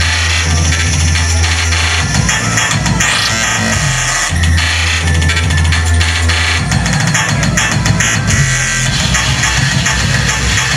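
Loud electronic music played live through a club's PA, recorded in the room. A heavy held bass note sits under busy high synth and percussion layers, dropping out for a couple of seconds twice.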